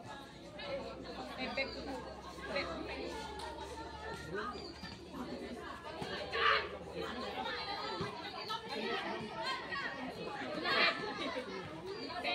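Voices of players and onlookers chattering and calling out over one another, with two brief louder calls, about six and a half and about eleven seconds in.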